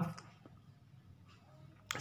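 Faint room tone after the tail of a spoken word, with one sharp click near the end.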